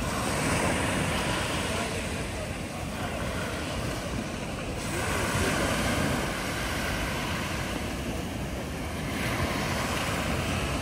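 Small sea waves breaking and washing up a pebble beach, the surf swelling and easing, with wind on the microphone.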